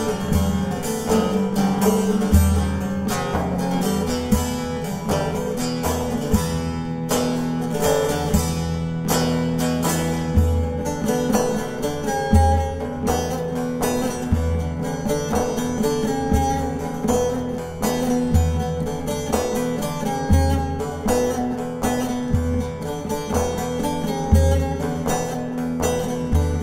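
Bağlama (Turkish long-necked lute) playing a traditional Anatolian folk melody in quick plucked runs, over low bass notes that recur about every two seconds.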